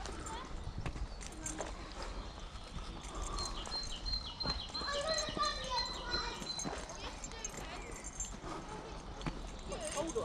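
Footsteps on a dirt woodland path, with people's voices some way off, loudest a little past the middle.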